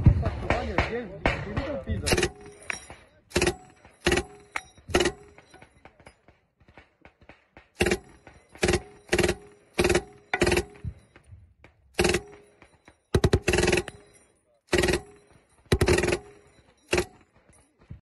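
MG 42-type belt-fed machine gun firing short bursts, about fourteen in all, each a brief rip of rapid shots, with a longer burst a little past halfway. Voices are heard in the first two seconds before the firing starts.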